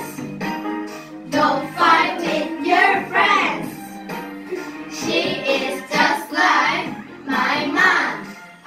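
Young children singing an English song together over instrumental accompaniment, in phrases of a second or so with short breaths between.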